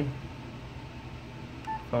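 A Yaesu FT-991 transceiver's key-press beep: one short tone with a faint click, near the end, over a low steady hum.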